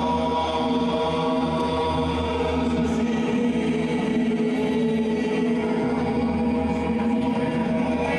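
A live psychedelic rock band holds a steady, sustained droning chord with no beat.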